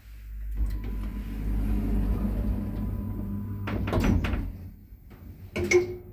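Automatic sliding doors of an Ayssa passenger lift closing after a floor button is pressed: the door motor runs steadily for about three seconds, then the panels knock shut with several clicks about four seconds in. A single loud clunk follows near the end.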